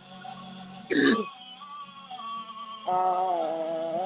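A voice holding long, slowly sliding notes over a steady low hum. It is broken about a second in by a short, loud throat clearing, and a new long note begins near three seconds.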